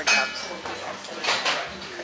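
Restaurant clatter of plates and cutlery: scattered clinks and knocks of crockery and metal, with a few brief ringing tones.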